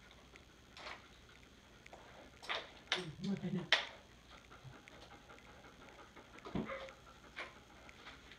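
German Shepherd being handled and brushed: a few short, quiet rustling strokes on fur and on the cot, clustered about two and a half to four seconds in and again near the end, with a brief soft voice murmur among them.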